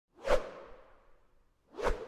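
Two whoosh sound effects on an animated logo intro, about a second and a half apart, each fading off quickly after it.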